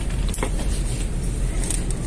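Steady low rumble of shop background noise, with a couple of faint clicks.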